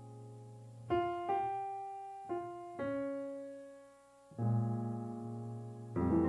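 Grand piano playing slow solo jazz: a held chord fades, then a short melody of four single notes, and about four and a half seconds in a full, low chord is struck.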